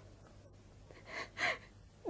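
A distressed woman's two quick, breathy gasps about a second in, the breathing of someone on the verge of crying.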